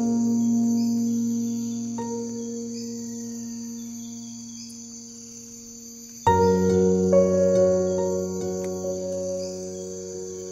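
Soft, slow instrumental piano music in long sustained chords that fade away, with a new chord about two seconds in and a louder one struck about six seconds in, over a steady high chirring of crickets.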